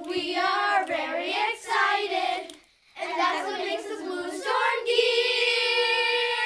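A group of children singing a song together in phrases, with a short break partway through, ending on one long held note.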